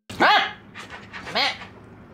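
Corgi barking twice: a loud, sharp bark right at the start and a second bark about a second later.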